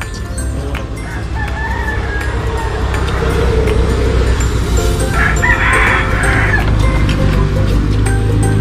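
A rooster crowing over background music, with the loudest crow about five seconds in.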